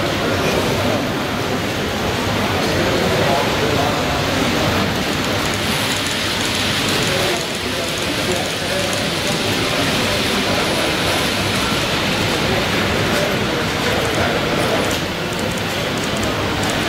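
Steady background babble of many indistinct voices, with no single voice standing out.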